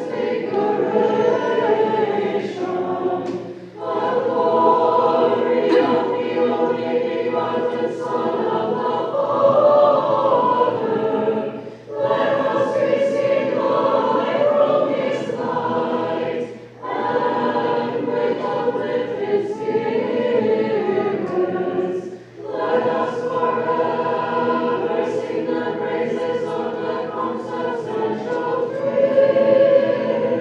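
Unaccompanied choir singing Orthodox liturgical chant, sustained sung phrases with four short breaks between them.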